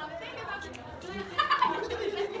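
A person's voice making wordless vocal sounds, with a louder falling sound about one and a half seconds in.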